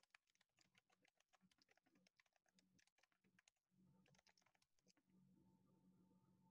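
Faint typing on a computer keyboard. Two runs of rapid key clicks, the second shorter, ending about five seconds in.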